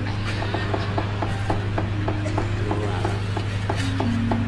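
Wayang kulit percussion playing a quick run of short, evenly spaced strikes, about four a second, over a steady low hum.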